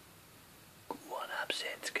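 Low steady room hiss, then a person whispering, starting about a second in.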